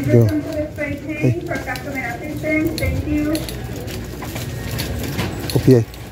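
Indistinct voices in a store, with a wire shopping cart rattling as it rolls and light clicks.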